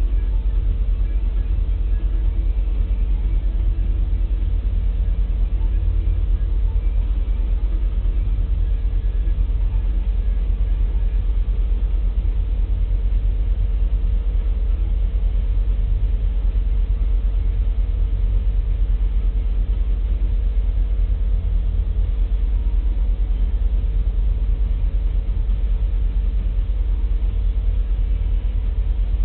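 Loaded coal cars of a unit coal train rolling past, making a steady low rumble with a thin steady tone above it.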